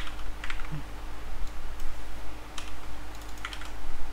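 Typing on a computer keyboard: a handful of scattered, separate keystrokes, over a faint steady hum.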